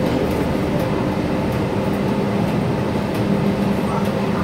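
Inside the cabin of a Gillig BRT clean diesel bus on the move: a steady low engine drone and road rumble, with faint light rattles.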